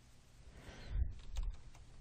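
A few faint clicks from operating the computer, such as keys or a pen tapping a tablet, over low room noise.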